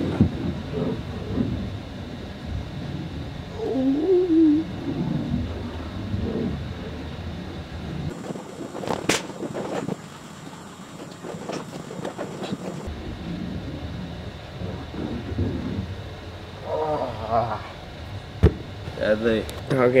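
Steady low room hum with scattered wordless vocal sounds from a man straining through a shoulder exercise, and a single sharp knock near the end.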